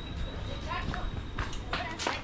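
Footsteps on a cobblestone lane with faint distant voices, over a low rumble of outdoor background noise; a faint steady high tone runs through the first half.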